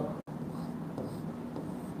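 Faint scratching of a pen or chalk drawing lines on a board.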